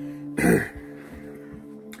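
A person coughs once, briefly, about half a second in, over background music with held tones.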